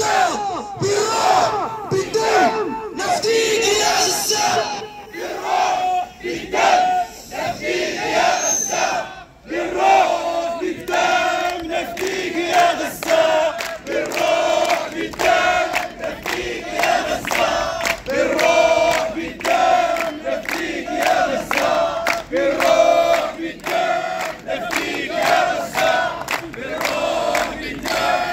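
A crowd of protesters shouting slogans together in unison, short rhythmic phrases repeated over and over with many voices overlapping.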